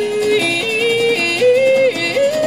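Live rock band music: a sustained, wordless vocal line steps up and down between a few notes over the band.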